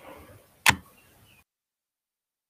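A single sharp click about two-thirds of a second in, over faint room noise; the sound cuts off dead less than a second later.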